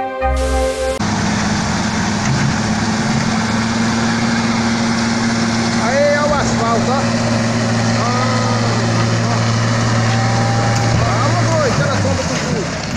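Heavy truck engine running steadily as an overturned trailer is pulled upright, with men's voices calling out over it from about halfway through.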